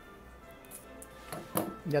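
Scissors snipping through paper: a few short, crisp cuts in the second half as the last edges of a paper star are cut free, over faint background music.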